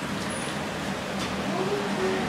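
Otis hydraulic scenic elevator cab in motion: a steady hum and noise under the ride, with a faint low hum that fades about halfway through.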